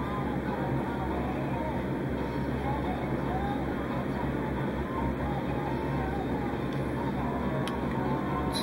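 Steady low background hum with a faint far-off voice over it.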